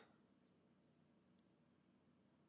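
Near silence, with one faint tick about a second and a half in.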